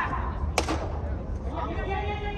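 A cricket bat striking the ball once, a single sharp crack about half a second in, ringing briefly in the large hall.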